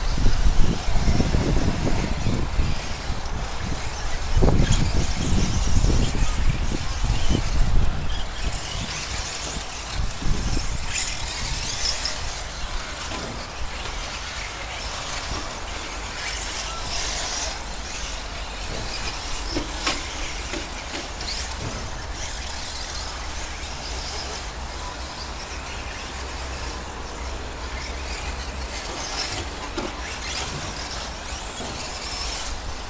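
Radio-controlled 4x4 short-course trucks racing over a dirt track, their motors and tyres giving a scattered high whirring that comes and goes as they pass. A low rumble underneath is loudest in the first eight seconds.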